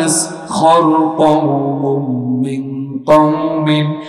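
A man's voice chanting Quranic recitation in a drawn-out melodic style through a microphone, holding long notes with slow rises and falls in pitch; the voice breaks off briefly about three seconds in and comes back in loudly.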